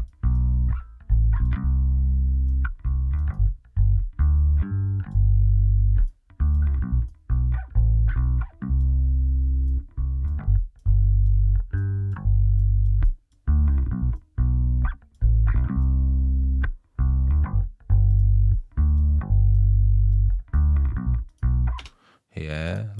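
Bass guitar, recorded direct, playing a line of separate plucked notes on its own, with no drums or other instruments.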